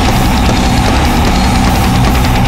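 Groove/death-thrash metal playing loud and unbroken: heavily distorted, low-tuned guitars with a driving drum kit.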